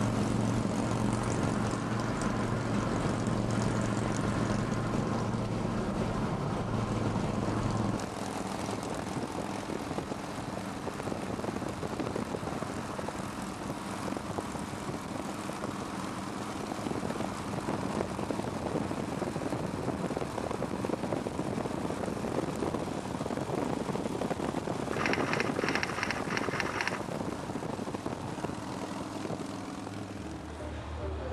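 Highway traffic noise while travelling at speed alongside motorcycles. A steady engine drone fills the first eight seconds, then gives way to mostly wind and road rush. Near the end comes a brief rapid chattering lasting about two seconds.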